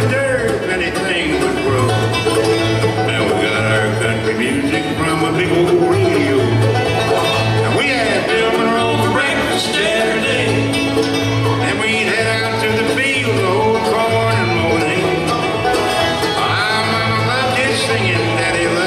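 Live acoustic bluegrass band playing at a steady tempo: fiddles, mandolin, banjo and acoustic guitars over an upright bass.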